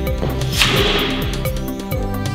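Background electronic music with a steady beat, cut across about half a second in by a single sharp whoosh, like a whip swish, that fades within half a second.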